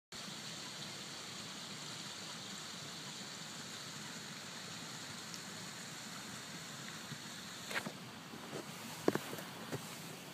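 Steady, even hiss of outdoor background noise, with a few brief knocks and short sounds in the last few seconds.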